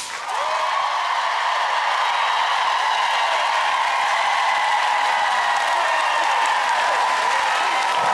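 Studio audience applauding and cheering steadily after a dance routine ends.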